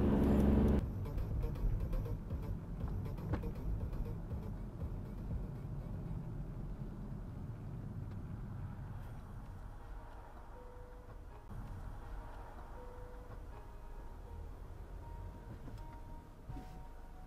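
Low, steady road and engine rumble heard inside a moving car, slowly fading as the car slows down. Faint music-like tones come in during the second half.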